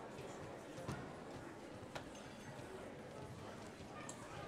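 Quiet murmur of a concert hall between pieces, with a few sharp knocks and footsteps on the stage about one and two seconds in.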